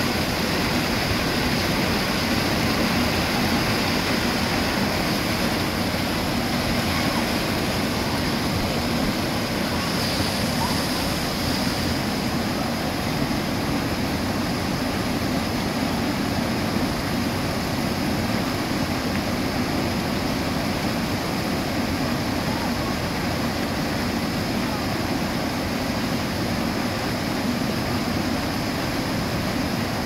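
Water spilling over a low concrete dam and rushing down through whitewater rapids, a loud, steady, unbroken rush.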